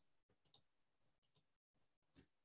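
Faint clicking at a computer: two quick double clicks, about half a second in and again just after a second in.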